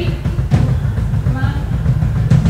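Progressive metal band playing live through the PA, a steady drum kit and bass pulse underneath, with a woman's voice on the microphone over it.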